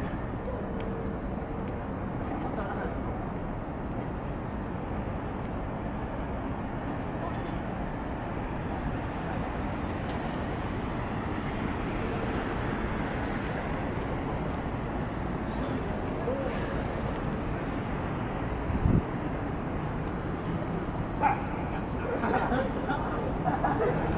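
Steady outdoor urban background noise, mostly a low rumble, with faint indistinct voices, and a brief low thump near the end.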